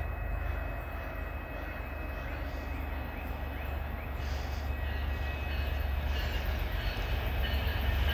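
Approaching MBTA diesel commuter train: a low rumble that grows steadily louder as it nears.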